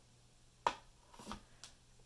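A hardboard painting board set back down flat on a wooden desk: one sharp click about a third of the way in, then a soft rustle and a faint tick, over quiet room tone.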